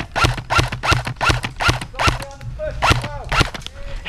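Airsoft rifle firing single shots in quick succession, about a dozen sharp cracks over four seconds at an uneven pace.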